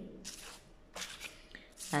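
Faint rustling and sliding of paper flashcards being handled and swapped, in a few short strokes.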